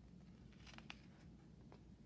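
A picture-book page being turned: a few faint crisp rustles and clicks about a second in and again near the end, over near silence.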